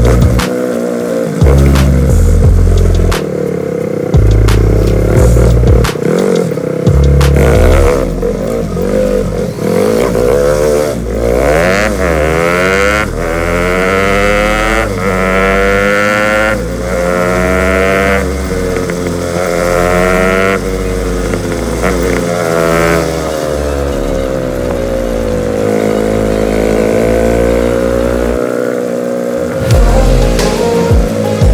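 Motorcycle engine heard from the rider's seat while riding, its pitch rising and falling again and again as it accelerates and shifts through the gears.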